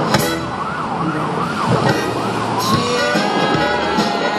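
An emergency-vehicle siren sounding in quick rising-and-falling yelps, turning to a long rising wail near the end. It plays over music and the steady rush of the fountain's water jets.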